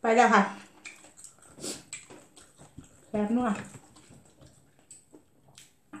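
A woman speaks two short phrases in Thai while eating. Between them come faint, scattered clicks and smacks of eating with the mouth and fingers.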